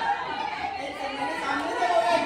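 Several people's voices talking over one another, with a man calling out loudly.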